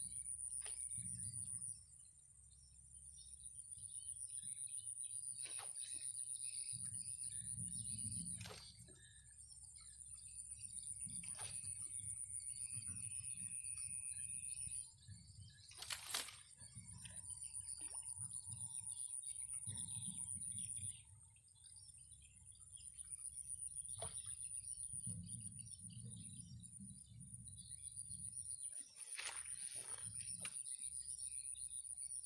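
Open-air ambience: a steady high-pitched insect buzz with scattered bird chirps and a low rumble of wind on the microphone. A few sharp clicks break in, the loudest about 16 seconds in.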